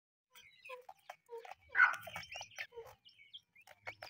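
Francolin hen and chicks calling: a quick run of short clucks and chirps at differing pitches, with a louder, rougher burst just under two seconds in.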